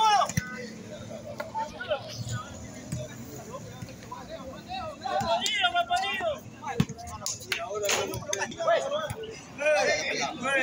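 Men's voices calling out during an ecuavoley rally, with a few sharp slaps of the ball being struck. The loudest stretch of voices comes a little past the middle and again at the end.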